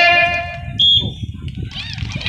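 A loud, high-pitched voice holds a long call for about a second. A short, higher tone follows near the middle, over crowd chatter.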